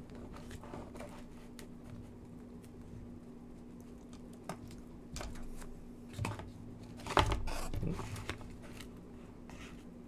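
Paper wrapper and cardboard burger box rustling and crinkling as hands handle a burger, with scattered small taps and the loudest crinkling bout about seven seconds in, over a steady low hum.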